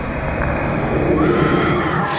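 A woman's shrill, whinny-like scream rising over a swelling horror soundtrack, starting about a second in.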